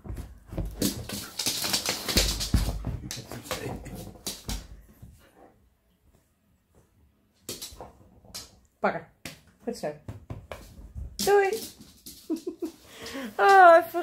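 A dog romping on a fabric sofa: a rustling, scuffling commotion for the first few seconds, a short pause, then a few clicks and brief high-pitched vocal sounds near the end.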